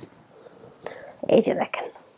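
A woman speaking softly, close to a whisper, in a short burst about a second in.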